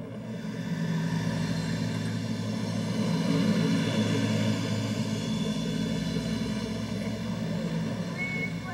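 Low sustained suspense drone of several held tones, swelling slightly toward the middle and easing off near the end.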